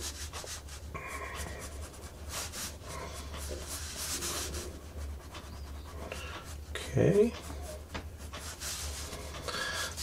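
Prismacolor Col-Erase blue colored pencil scratching across Bristol board in many short, repeated strokes, with a brief vocal sound about seven seconds in.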